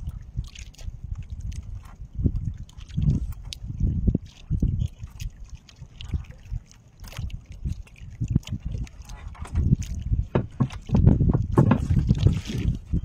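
Water slapping against a small wooden boat's hull in irregular low thumps, with scattered light knocks and clicks from the boat and the hand line being worked.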